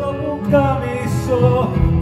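A live band accompanies a singer mid-song, the voice carrying a sung line in Greek over guitars and drums.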